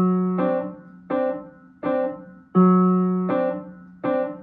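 Piano, left hand alone, playing a broken D7 chord in steady beats across two measures. A low F sharp rings on the first beat, then the C and D are struck together on the next beats, and the pattern starts again about two and a half seconds in.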